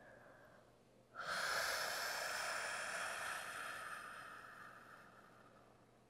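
A woman's long, audible breath, close to the microphone. It starts suddenly about a second in as a soft hiss and fades out over about four seconds.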